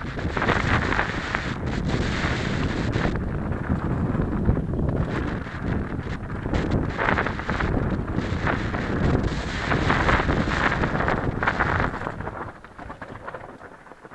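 Wind buffeting an action camera's microphone at riding speed on a mountain bike descent, mixed with rattling and knocks from the bike over rocky singletrack. It eases off near the end.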